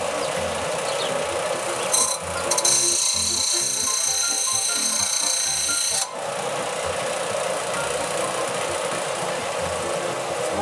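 Benchtop belt sander running while a small nickel arrowhead is ground against the belt: a steady harsh grinding, louder and higher-pitched from about two and a half to six seconds in. Background music with a repeating bass line plays over it.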